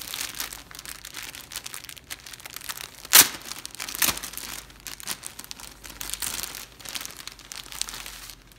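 Clear plastic garment bag crinkling and rustling as it is handled and pulled open, with one sharp, louder crackle about three seconds in and a smaller one a second later.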